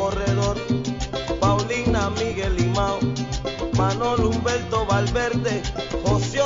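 Salsa music in an instrumental passage: a violin carries a sliding, wavering melody over a repeating bass line and steady percussion.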